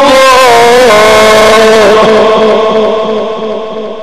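Amplified male voice of a Quran reciter holding one long drawn-out note of melodic recitation. The pitch steps down about a second in, and from about two seconds the voice fades away into an echoing tail.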